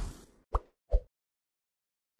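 Logo-animation sound effects: the tail of a whoosh fading out, then two short plops about half a second apart, the second lower in pitch than the first.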